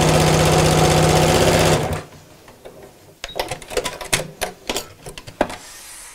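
Electric sewing machine stitching at a steady speed, stopping about two seconds in. Scattered light clicks and fabric rustling follow as the quilted work is handled.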